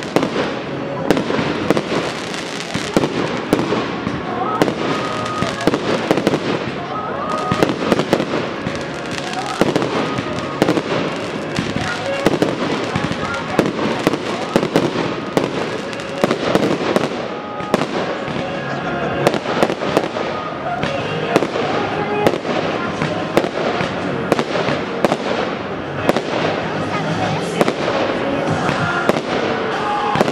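Professional aerial fireworks display, with shells bursting one after another: dozens of sharp bangs at a rapid, irregular pace throughout.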